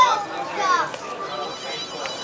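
Children's high-pitched voices calling and chattering, with other voices in the background.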